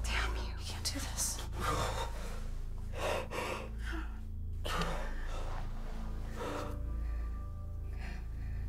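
A man gasping and sobbing in several ragged breaths, over a low, steady music score.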